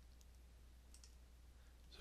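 Near silence: faint room tone with a steady low hum and a few faint computer-mouse clicks in the first second.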